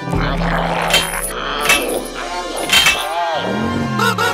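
Animated-cartoon soundtrack: background music mixed with sound effects, with several sharp hits and pitch glides that bend up and down near the end, and wordless character vocal noises.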